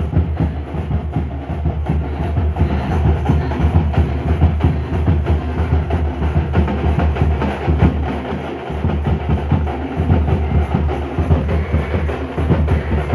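A tamate drum band playing a fast, loud, continuous rhythm of dense stick strokes.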